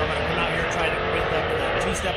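A man talking, with steady vehicle engine noise in the background.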